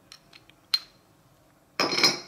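Metal spoon clicking and clinking against a food chopper's bowl as honey is spooned in. There are a few light taps, then a sharp ringing clink under a second in, and a louder clatter near the end.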